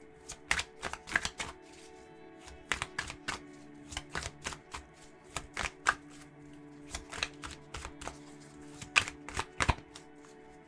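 A tarot deck being shuffled overhand, cards slapping and flicking against each other in quick irregular clusters of crisp taps. A soft, steady background music drone runs underneath.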